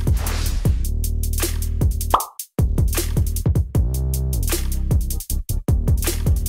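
Electronic background music with a drum-machine beat of repeated hits that slide down in pitch. It cuts out briefly about two and a half seconds in, just after a short rising whoosh, then the beat resumes.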